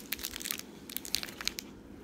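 Small clear plastic bag crinkling in the fingers as the pin inside it is handled: a run of light crackles that thins out near the end.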